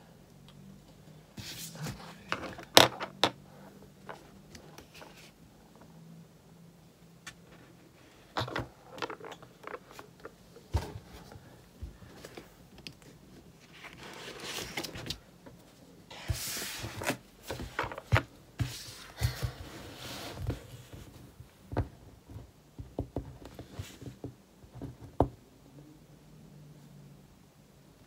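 Desk work with paper and a pen: cards being handled and slid across a wooden desk, with scattered taps, knocks and rustles. A sharp click about three seconds in is the loudest sound, and there are longer stretches of paper rustling about halfway through.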